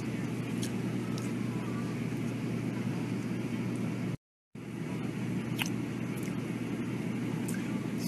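Steady low rumble of road noise inside a moving car, with a few faint clicks. It drops out to silence for a moment about four seconds in, then resumes.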